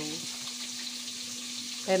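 Food frying in hot oil: a steady sizzle, with a low steady hum underneath.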